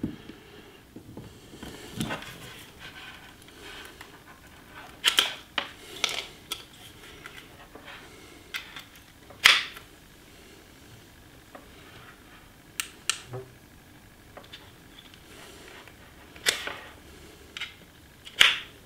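Scattered sharp plastic clicks and handling noise from a USB cable plug and a rechargeable power-bank hand warmer being worked by hand. There are about ten separate clicks with short gaps between them, and the loudest comes about halfway through.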